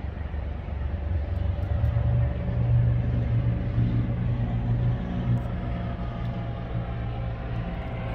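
Low rumble of a car engine nearby, swelling louder from about two seconds in and easing off after about five seconds.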